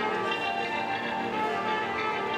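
Live orchestra of strings and winds playing music, held notes sounding together as chords.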